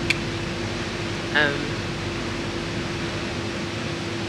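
Steady mechanical hum with an even hiss and one constant tone, like indoor ventilation running; a woman says a short "um" about a second and a half in.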